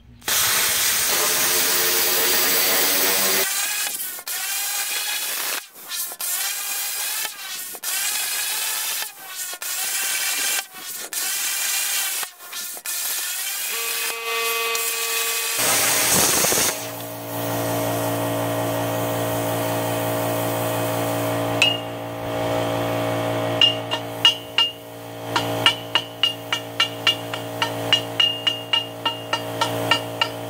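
Hypertherm Powermax45 plasma cutter cutting a rusty steel pipe: a loud hiss of air and arc that stops and restarts many times. Later a steady hum runs under a string of hammer taps that ring on the steel pipe, coming faster toward the end.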